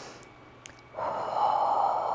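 A woman's long, audible exhale through the mouth, a breathy hiss that starts about halfway in, during a Pilates hip lift. The first half is quiet apart from a faint click.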